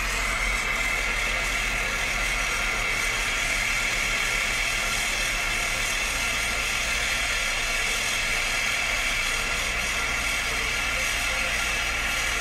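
Steady engine and road hum of a car, heard from inside its cabin, with an even hiss and no changes in level.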